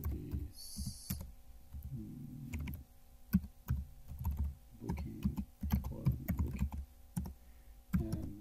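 Typing on a computer keyboard: irregular key clicks as a line of Java code is entered. A low, voice-like hum comes and goes in between.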